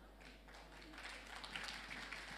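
Faint scattered applause from an audience, a little louder from about a second in.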